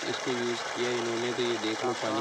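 Steady rush of muddy water gushing from a solar submersible pump's discharge pipe and splashing onto dry ground, with a man talking over it.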